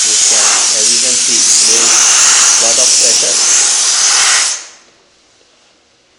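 Compressed air rushing out of the opened brass ball valve on a dental air compressor's tank: a loud, steady hiss that stops about four and a half seconds in.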